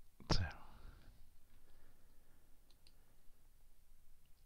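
A single spoken word, then two faint, quick key clicks on a computer keyboard close together about three seconds in, as a code cell is run.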